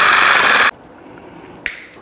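Reciprocating saw cutting through flexible metal conduit, a loud steady rasp that cuts off abruptly less than a second in. A brief click follows near the end.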